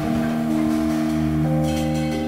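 Jazz trio music: Fender Rhodes electric piano chords ringing and sustaining, with new notes entering about half a second and a second and a half in, over a fretless bass line.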